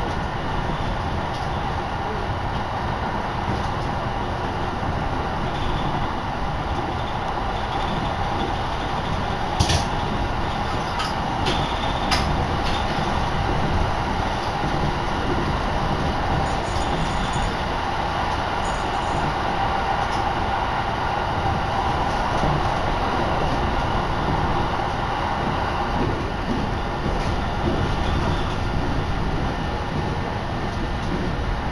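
Steady running noise of a Shinetsu Line train heard from inside the moving passenger car, with a few sharp clicks about ten to twelve seconds in.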